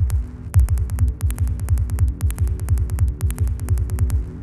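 Minimal glitch-style electronic music: a rapid train of dry clicks over quick pulsing bass thuds and held low hum-like tones, with a brief gap in the clicks a quarter second in.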